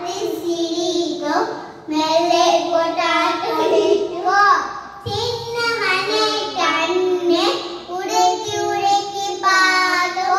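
A young girl singing a nursery rhyme into a handheld microphone, in phrases of held notes with brief pauses between lines.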